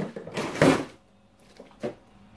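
A sudden sliding, rustling scrape of grocery items being handled, about a second long and loudest just past halfway through it, followed near the end by a single short click.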